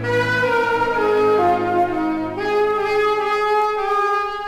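Orchestral closing bars of a 1950s pop ballad played from a 78 rpm record: sustained chords without voice, moving to a new held chord a little past halfway.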